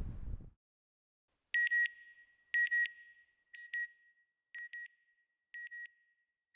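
Electronic double beeps, a pair about once a second, starting about a second and a half in and growing quieter with each repeat, like an end-logo sound effect. A man's voice trails off at the very start.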